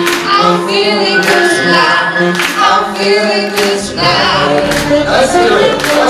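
Male and female vocalists singing together live with a band, the voices to the fore and sharp hits marking the beat. The deep bass drops away at first and comes back in about four seconds in.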